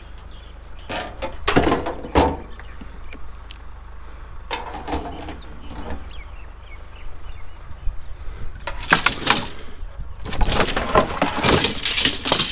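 Household junk being rummaged through by hand: items shifted and knocked together in several short clattering bursts, the busiest near the end, over a steady low hum.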